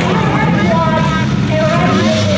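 A person's voice, loud and continuous, over a steady low rumble of vehicle engines.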